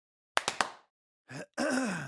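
Three quick sharp knocks, then a man's wordless vocal sound: a short one rising in pitch followed by a longer one sliding down in pitch.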